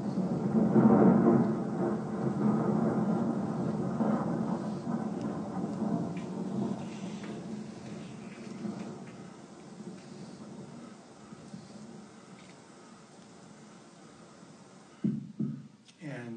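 Thunder in a mountaintop thunderstorm field recording, played back over a theatre's loudspeakers. The rumble swells to its peak about a second in, then rolls on and slowly dies away over the next dozen seconds, with rain in the recording beneath it.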